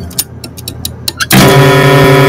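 Film-trailer soundtrack: a run of irregular sharp ticks, then a loud sustained music chord that cuts in suddenly about two-thirds of the way through and holds steady.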